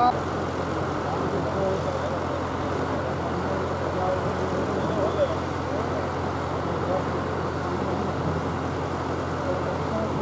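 Steady whirr of large pedestal fans with a constant low hum, and faint indistinct voices underneath.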